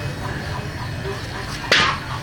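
A long wooden pole swung and handled, giving one short, sharp burst near the end over a steady low rumble.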